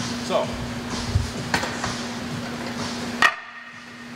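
Iron weight plates knocking against each other and against the loading pin of a plate-loaded seated calf raise machine. There are a few separate metallic knocks, the sharpest about three seconds in, over a steady hum.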